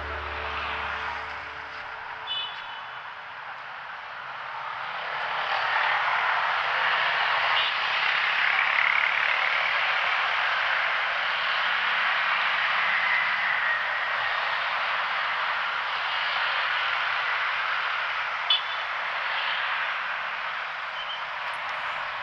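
Busy city road traffic: cars and motorcycles passing in a steady wash of engine and tyre noise, which swells a few seconds in and then holds.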